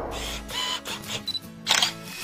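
Intro music with camera sound effects: a few short high beeps like an autofocus lock, then a loud shutter click near the end.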